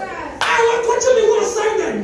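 One sharp hand clap about half a second in, over a woman's voice praying aloud.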